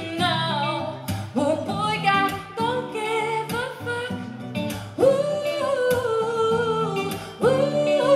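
Woman singing a live pop song over guitar accompaniment, in drawn-out phrases without clear words, with one long held note about five seconds in before a new phrase starts near the end.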